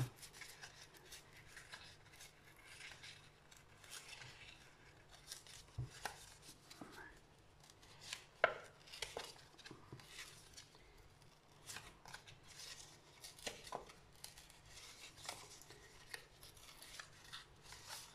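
Paper being torn slowly by hand in short, faint rips and rustles, with one sharper crackle about eight and a half seconds in.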